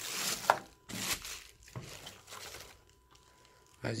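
Clear plastic packaging bag crinkling and rustling as a kettle is worked out of it, in several bursts over the first three seconds or so.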